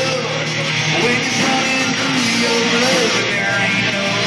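Live country-rock band playing: electric and acoustic guitars, bass and drums, loud and continuous, with a gliding melody line on top.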